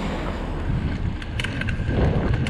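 Wind buffeting the microphone over a steady low rumble of tyres on rough tarmac from a moving camera, with a few light clicks and rattles in the last second.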